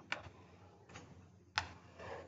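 Three light clicks of a pen tapping an interactive whiteboard as lines are drawn on it, the last and loudest about a second and a half in, over faint room noise.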